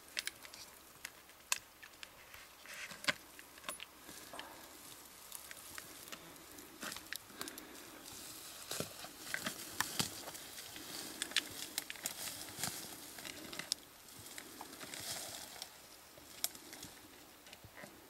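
Irregular clicks, crackles and rustling of handling noise as a trail camera is fitted and strapped to a tree trunk, with brush and bark brushed against.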